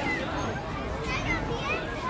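Children's excited squeals and calls from the riders of a kiddie frog-hopper drop ride, over general crowd chatter.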